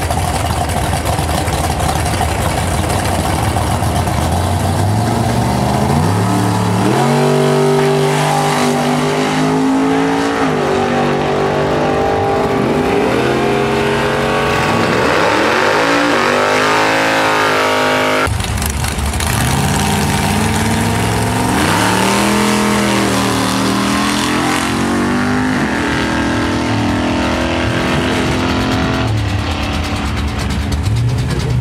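Drag cars' V8 engines at the start line, then launching at full throttle and pulling hard down the strip, the pitch climbing in steps with each gear change before fading away. About two-thirds of the way through the sound changes abruptly and another run of a car accelerating through its gears is heard.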